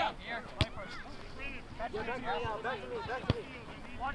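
Two sharp thuds of a soccer ball being kicked on grass, nearly three seconds apart, over distant shouting voices from players and the sideline.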